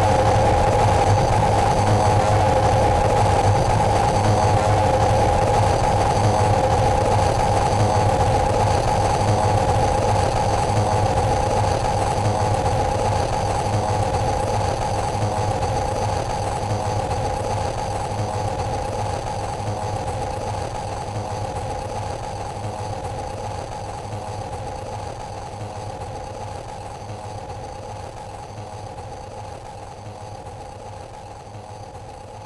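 Eurorack modular synthesizer patch built around a Benjolin chaotic oscillator and an Excalibur filter, playing a steady droning texture: two held pitches over a low hum with noisy grit on top. It slowly fades out.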